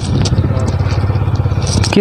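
A steady low rumble with no clear rise or fall.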